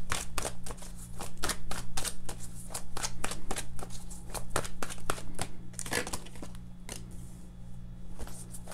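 A tarot deck being shuffled by hand: a quick run of card flicks and snaps that thins out and quietens near the end, over a steady low hum.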